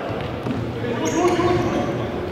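Futsal ball thudding on the hardwood floor and players calling out, echoing around a large sports hall.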